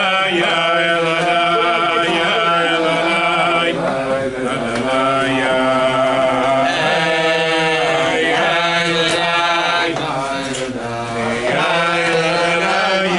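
A group of men singing a slow Chassidic niggun together, with long held notes that glide between pitches.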